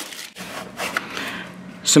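Faint rustling and scraping of product packaging: loose plastic wrap being handled and a cardboard inner box sliding out of its paper sleeve.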